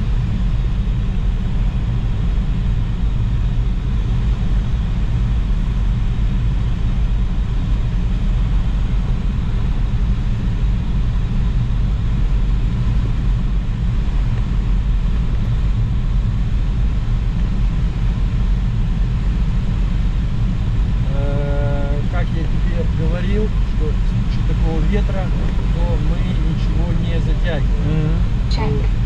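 Steady low drone of cockpit noise in a glider in flight. About 21 seconds in there is a short pitched tone, and in the last few seconds there are voice-like sounds.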